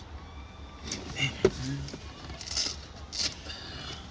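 Girls shrieking and yelling in several short high-pitched bursts, heard from inside a car. There is a sharp click about one and a half seconds in.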